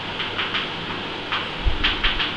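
Chalk writing on a blackboard: short scratching strokes, with two louder strokes and a soft low thump in the second half.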